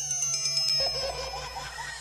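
Electronic logo-animation sound effects: high, steady beeping tones with quick chirping, glitchy blips and ticks, slowly getting louder as a build-up.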